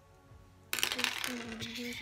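Makeup brushes rattling and clinking together as they are rummaged through, a dense clatter that starts suddenly less than a second in.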